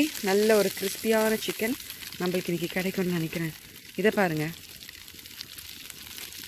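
Chicken pieces sizzling on aluminium foil over a charcoal grill, a steady hiss with fine crackle. A voice talks over it for the first four seconds or so.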